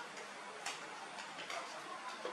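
Light, scattered taps and clicks from baby monkeys handling a plastic baby bottle and climbing over a plastic storage box and a wooden frame, with a faint low hum underneath.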